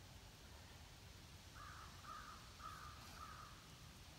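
A crow cawing four times in quick succession, faint, starting about a second and a half in, over near silence.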